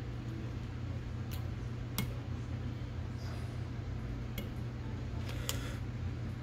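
A whip-finish tool and thread being worked at the head of a fly in the vise, giving a few small, sharp clicks over a steady low hum.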